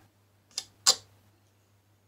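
A steel painting knife scraping and tapping on the painting board as paint is dabbed on: two short, sharp strokes about a third of a second apart, the second louder.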